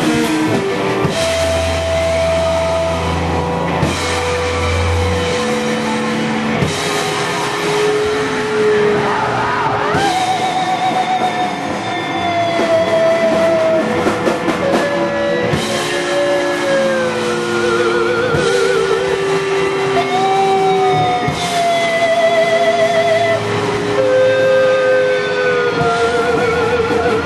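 A live rock band of two electric guitars, bass and drums playing an instrumental passage with no vocals. The guitars hold long notes that slide between pitches and waver near the end, over bass and drums with repeated cymbal crashes.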